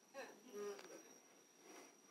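Near silence: room tone with a faint steady high-pitched whine, and two faint brief voice sounds in the first second.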